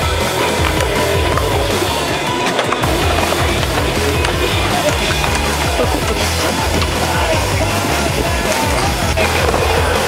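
Skateboard wheels rolling on concrete as skaters carve a full pipe and bowl, under a music track with a steady bass line.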